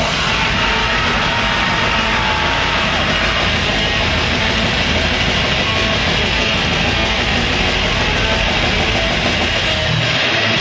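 Death metal band playing live: distorted electric guitars and drums in a dense, unbroken wall of sound, heard at loud, steady volume from the audience.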